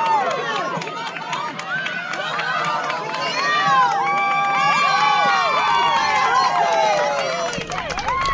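Many high-pitched children's voices yelling and chanting over one another: a youth baseball team shouting cheers, with long held calls and quick rising and falling shouts.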